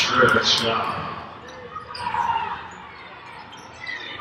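A basketball being dribbled on a hardwood court during live play in a large arena. Sneakers give a couple of short, high squeaks in the first half second, and players' voices are heard.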